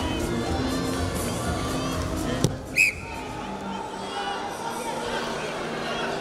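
Arena crowd noise and music, then a sharp knock about two and a half seconds in. Right after it comes a short, loud blast on a referee's whistle that ends the wrestling bout, after which the hall noise is quieter.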